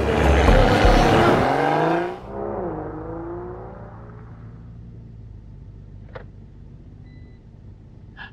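Music with a heavy bass beat, cut off about two seconds in by a rising sweep; after that a car's steady low engine hum is heard from inside the cabin, slowly fading, with a single click about six seconds in.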